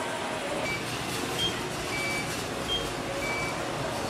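About five short beeps, alternating between a lower and a higher pitch, over steady background noise.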